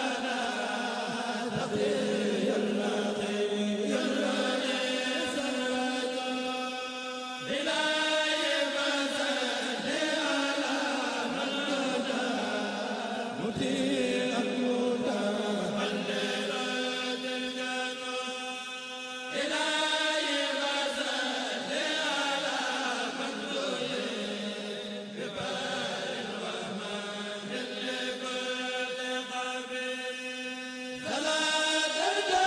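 Male voices of a Mouride kurel (chant group) chanting khassaid religious poems together. They sing long, held, gliding phrases, with a new phrase starting about every six seconds.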